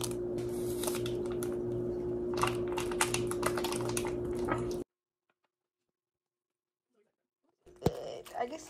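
Kitchen scissors snipping open a plastic seasoning sachet and the sachet crinkling as it is squeezed out: a scatter of small sharp clicks over a steady low hum. The sound cuts off to dead silence about five seconds in.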